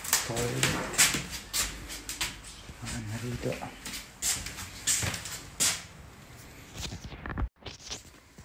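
Indistinct low voices with scattered knocks and clicks in a small room; the sound drops out for a moment near the end.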